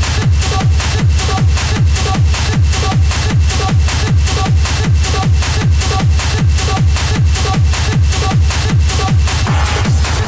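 Hard techno (schranz) mixed in a DJ set: a loud, steady, fast kick drum whose deep thuds fall in pitch, with a short synth note repeating between the kicks. Near the end a rising noise swell comes in.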